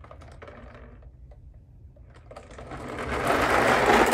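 Marbles rattling inside clear plastic bottle toy cars as the cars roll away, over a low rumble. The clatter builds from about two seconds in and is loudest near the end.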